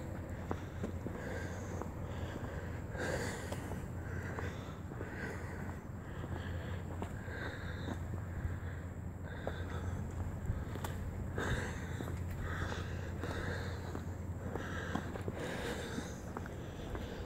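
A person walking on wet asphalt: soft, evenly paced steps about every half second or so, with breathing close to the phone's microphone, over a steady low rumble.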